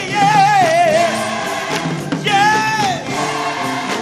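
Live gospel music: a band playing under choir voices, with a high voice holding two long notes with a strong wavering vibrato, one near the start and one a little past the middle.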